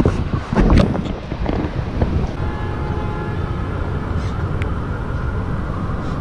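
Wind buffeting the action camera's microphone, giving a steady heavy rumble, with a few knocks in the first second.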